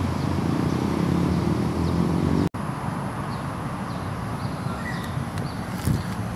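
Outdoor background noise with a steady low rumble of traffic, and an engine hum that rises in pitch during the first couple of seconds. The sound cuts out for a moment about halfway in, then the rumble carries on.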